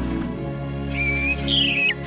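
Sustained orchestral film music with an animated bird chirping twice over it about halfway through: a short level whistle, then a higher call that slides down in pitch.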